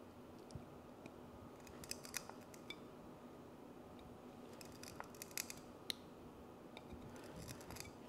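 Small side cutters snipping bit by bit through the brittle clear-plastic struts of a pour-over dripper: a few faint, scattered snips and clicks, with a small cluster about five to six seconds in.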